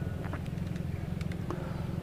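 A pause in speech filled by a steady low background hum, with a couple of faint ticks.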